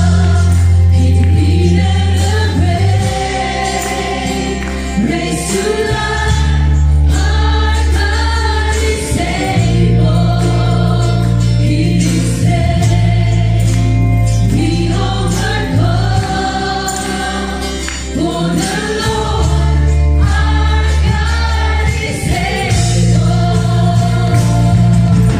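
A live worship band playing a gospel song: a group of singers in chorus over drums, bass, electric and acoustic guitars and keyboard, with long held bass notes changing every few seconds.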